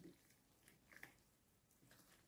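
Near silence, with a couple of faint, short wet squishes about a second in from a wooden utensil stirring raw-milk cheese curds in a ceramic bowl to break up the chunks.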